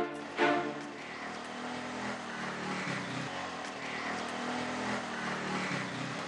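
Road traffic noise with a vehicle engine running, its low pitch wavering up and down. A musical chord ends about half a second in.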